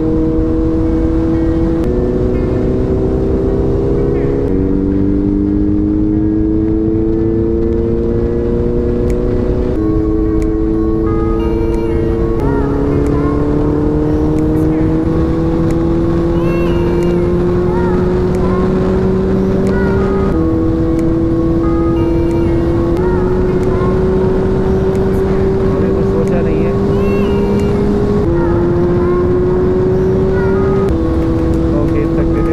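Honda CBR650F's inline-four engine pulling steadily on the move, its note climbing slowly with engine speed and changing pitch abruptly several times as gears change, over heavy wind rush on the helmet-mounted microphone.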